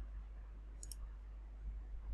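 A single faint computer mouse click a little under a second in, over a low steady hum.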